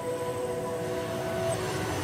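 Background music: sustained held tones with a change of chord about a second and a half in.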